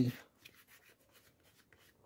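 Faint rubbing and scratching of fingers working the edge of a freshly glued insole into a sandal, after a man's voice trails off at the very start.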